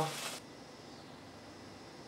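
Mushrooms sizzling in a hot pan of balsamic sauce, cut off abruptly less than half a second in; after that only a faint steady hiss of room tone.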